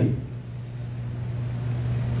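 A steady low hum, slowly growing louder, with the tail of a spoken word at the very start.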